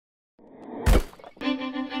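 Produced intro sting for a logo card: a building whoosh that ends in one heavy hit about a second in, then a sharp click and a held musical note.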